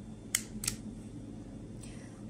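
Toggle switch B on a RadioLink RC6GS V3 radio transmitter flicked from its down position to up: two short, sharp clicks about a third of a second apart.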